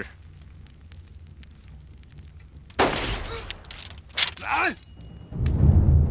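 A single pistol shot about three seconds in, followed a second later by a man's short cry falling in pitch. Loud low drum hits and dramatic music come in near the end.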